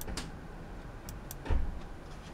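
Sharp computer mouse clicks: one at the start, then a quick pair about a second in. About one and a half seconds in comes a dull low thump, the loudest sound.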